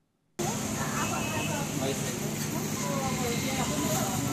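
Roadside ambience starting just under half a second in after a brief silence: a steady hum of traffic with faint voices talking in the background.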